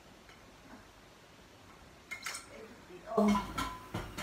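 Metal tubes of a clothes rack clinking and knocking together as they are handled, a few light clinks about two seconds in, then louder knocks near the end.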